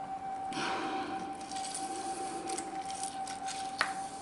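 A lemon half squeezed by hand over a glass blender jar of chopped vegetables: a soft wet squeezing in the first second or so, then a few light clinks against the glass and a sharp click near the end. A faint steady whine sits underneath.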